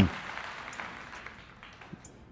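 A lull between talk: faint, even background hiss that slowly dies away, with a few light clicks.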